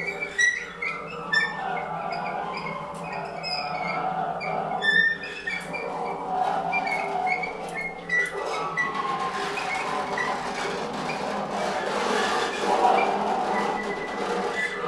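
Free-improvised percussion played with extended techniques: high squeaks and scrapes from sticks and hands rubbed across snare-drum heads, with scattered clicks. About halfway through it thickens into a denser, noisier wash.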